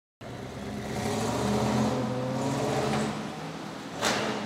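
A car engine running, starting a moment in, growing louder over about the first second and then holding steady.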